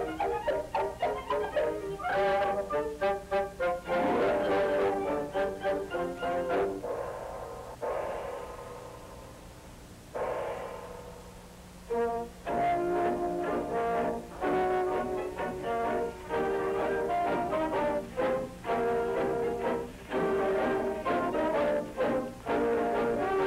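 Orchestra playing brassy dance music on an early-1930s film soundtrack: quick staccato notes at first, two long held chords that swell and die away in the middle, then a steady beat of chords from about twelve seconds in. A low steady hum lies beneath.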